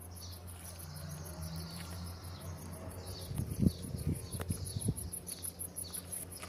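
Crickets chirping in a steady, fast, even pulse, several chirps a second, over a low rumble. A few low thumps come between about three and five seconds in, the loudest at about three and a half seconds.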